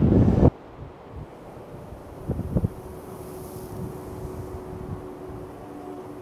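Wind rumbling on the microphone on an open beach, with a faint steady hum joining about halfway through.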